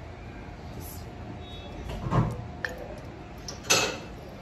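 Battered green chilli pakora dropped into hot frying oil in a steel karahi, giving a short, loud sizzle near the end, after a duller handling noise about two seconds in.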